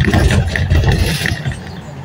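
Road and traffic noise from inside a moving vehicle, with a loud swell of noise for the first second and a half as another vehicle passes close alongside, then settling back to a steady hum.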